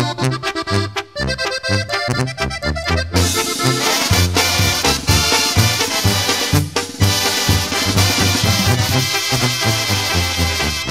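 Instrumental break of a norteño song backed by a Mexican brass band: an accordion line carries the first few seconds, then the full band comes in about three seconds in, louder and brighter, with brass and a pulsing bass line.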